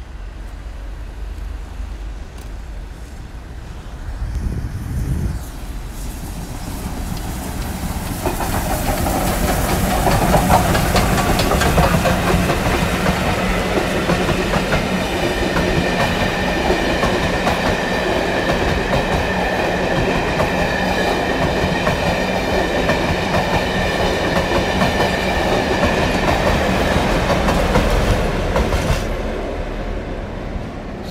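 Double-headed steam train, LMS Royal Scot 46100 and BR Britannia 70000, running past at low speed. The noise builds about eight seconds in, then the carriages follow with a steady rumble and clickety-clack of wheels over the rail joints. It tails off near the end as the Class 47 diesel at the rear goes by.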